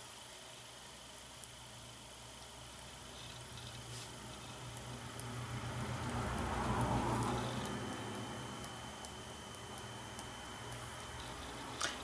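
Quiet, faint handling sounds of a thin paintbrush spattering white paint drops onto a painting: a few light ticks and a soft rustle that rises and fades around the middle.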